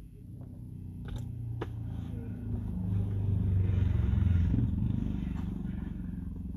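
A motor vehicle's engine, heard from inside a car, swelling to its loudest about four seconds in and then easing off, like a vehicle passing close by. A few sharp clicks come in the first two seconds.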